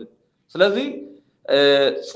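A man speaking in two short phrases separated by brief silences, the second drawn out on one held pitch.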